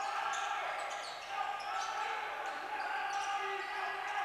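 Basketball being dribbled on a hardwood court during live play, with players' voices calling out faintly in the hall.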